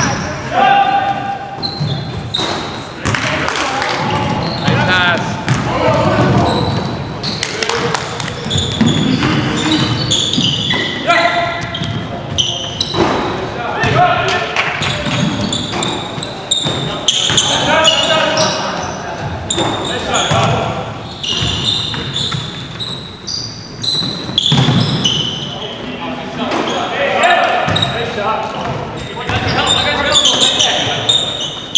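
A basketball game in a gym: a ball bouncing on the hardwood floor amid players' indistinct shouts and calls, all echoing in a large hall.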